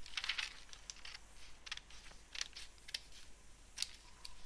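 Scissors cutting through a sheet of paper: a run of faint, irregular snips with light paper rustling.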